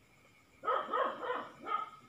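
A dog barking off-camera: four short, pitched yelping barks in quick succession, starting a little over half a second in.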